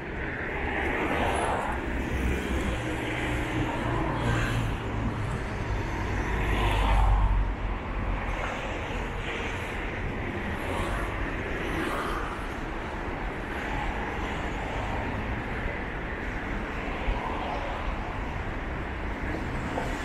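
Street traffic ambience: road vehicles passing along a city street, with a low rumble that swells as one vehicle goes by about six to seven seconds in.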